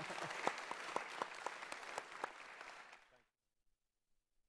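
Audience applauding, with a man's brief "thank you" and laughter at the start. The applause fades and then cuts off abruptly a little after three seconds in.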